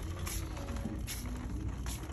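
Shop background noise: a steady low rumble with three brief rustles as the phone and cart are handled while moving through the aisle.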